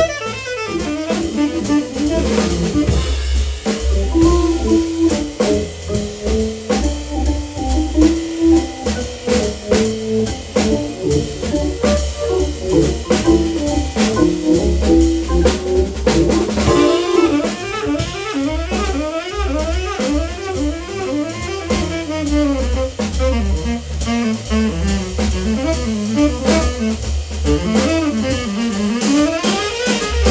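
Live jazz combo playing an instrumental break: saxophone and keyboard over a drum kit keeping a steady swing beat, with the melodic lead shifting about halfway through.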